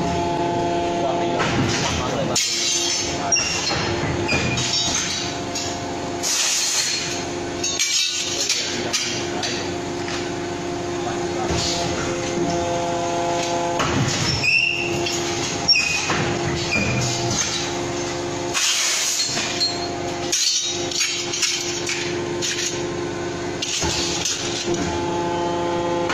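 Steady humming drone of a hydraulic metal-trimming press running, which drops out briefly several times, with clinks and knocks of steel parts being handled and fed into it.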